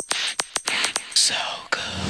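Dance-track break: rapid, evenly spaced hi-hat-like clicks, about six a second, with a whispered vocal over them. Near the end, sustained tones come in as the next track begins.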